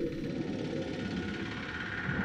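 A low, steady rumble with no distinct events.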